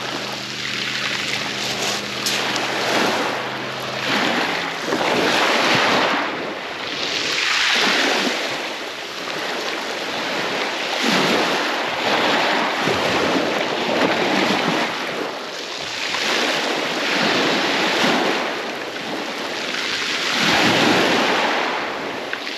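Small waves breaking and washing up a shingle beach, swelling and fading every few seconds.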